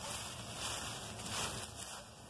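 Soft rustling and scratching of a hand brushing through dry chopped leaf mulch and loose soil.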